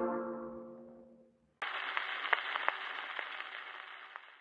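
The closing chord of a 78 rpm gramophone record dies away over about a second. After a short silence the record's surface noise starts suddenly: a steady hiss with scattered crackles and clicks, slowly fading.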